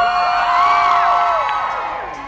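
Audience cheering and whooping, many high voices overlapping, dying down near the end.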